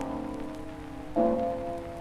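Held accompaniment chords on an early acoustic gramophone recording. Two sustained chords sound, the second entering a little past a second in, under the steady hiss and crackle of the old disc's surface noise.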